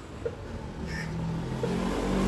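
An engine running with a steady hum whose pitch steps up and whose level gradually rises. There is a faint click about a quarter second in.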